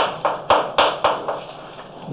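Chalk writing on a blackboard: a quick run of about five sharp taps and scratches in the first second, then quieter.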